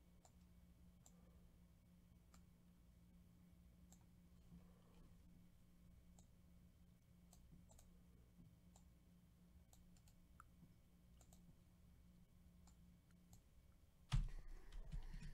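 Near silence, with faint scattered clicks of a computer keyboard and mouse, about one or two a second, over a faint steady low hum.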